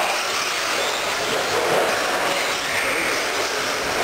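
Electric 1/10-scale RC stadium trucks running on an indoor dirt track: a steady noisy rush of their motors and tyres on the dirt.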